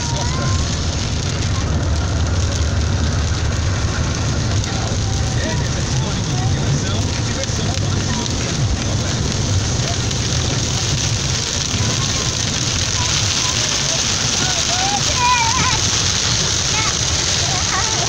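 Car cabin noise while driving: a steady low road and engine rumble, with rain on the windshield and roof. The rain hiss grows heavier in the last third as the car drives into a downpour.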